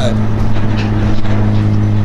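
A steady low motor hum that holds one pitch throughout.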